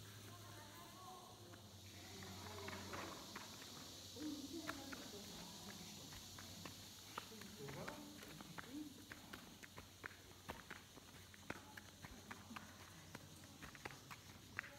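Faint voices of people talking at a distance, then footsteps on a gritty, sandy cave floor heard as a run of light, irregular clicks.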